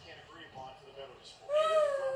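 A girl's long, high-pitched playful vocal call, starting about one and a half seconds in and sliding up and down in pitch, over faint background talk.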